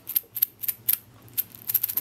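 A small painted toy maraca shaken by hand, giving a handful of short, irregular rattles that are not too loud.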